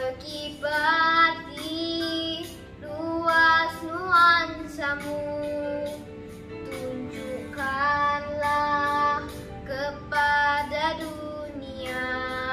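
A young girl singing a song in long held notes over backing music with a steady beat.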